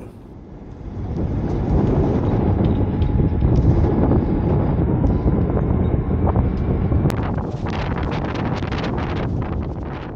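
Wind buffeting the microphone on a sailing yacht's deck: a heavy, low rumble that builds over the first second and stays loud. From about seven seconds in, a crackling hiss of water rushing along the hull and wake joins it.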